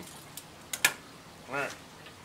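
A few short, sharp metal clicks from steel grill tongs, the loudest just under a second in.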